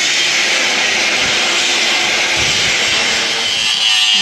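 Angle grinder with a cutting disc running against steel: a loud, steady, hissing grind, with a high steady whine joining it near the end as the disc bites. It is cutting the protective sleeve off a removed truck shock absorber so the size of its rod can be seen.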